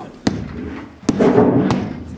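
Three sharp bangs from inside an air duct, spaced about half a second to a second apart, as the possums in it are riled up, with a studio audience laughing loudly after the second bang.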